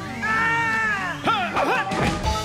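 A cartoon sludge monster's drawn-out wailing cry, held for about a second and then wavering sharply up and down, over background music. A hit lands near the end.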